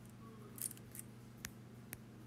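Faint taps on a tablet touchscreen: a soft brushing sound about half a second in, then two sharp taps half a second apart in the second half, over a low steady hum.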